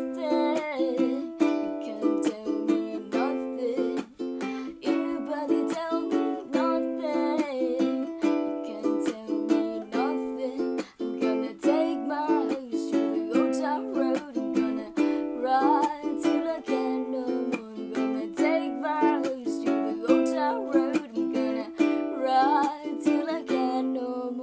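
A wooden ukulele strummed in a steady rhythm, with a voice singing over it.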